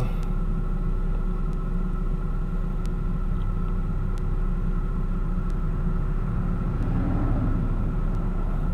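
A steady low rumble, like an idling engine or a running motor, with a faint hum over it and a few faint clicks about every second and a half.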